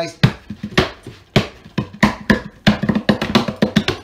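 A hand repeatedly striking the lid of a small wooden crate to knock it loose, with a rapid, uneven run of sharp knocks that come closer together toward the end.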